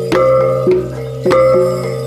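Ensemble of Iban ceremonial gongs being struck in a repeating rhythmic pattern, several strokes a second, each note ringing on over a low, sustained gong tone.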